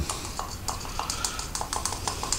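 A small handheld metal sifter worked by hand to dust cocoa powder, giving a quick run of light metallic clicks, about three or four a second.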